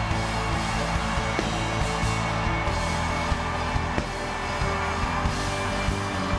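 Worship band music with held, sustained chords and occasional percussive hits.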